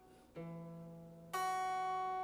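Clean electric guitar fingerpicked with a capo at the second fret: a bass note on the D string about a third of a second in, then the open high E string about a second later. Both notes are left ringing. This is the opening of the song's alternating bass-and-treble picking pattern.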